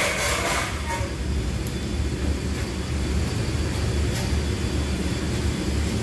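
Steady low mechanical rumble, with a brief burst of noise right at the start.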